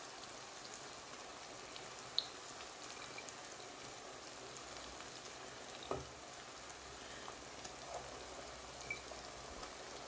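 Onion-tomato masala sizzling in a frying pan with a steady faint hiss. A couple of light knocks, the sharpest about two seconds in and another near six seconds, come as frozen lamb meatballs are set into the sauce.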